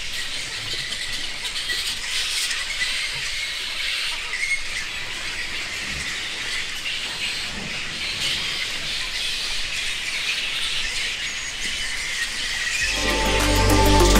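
A large colony of flying foxes calling together, a dense, continuous chorus of high calls. Electronic music with a heavy beat comes in near the end.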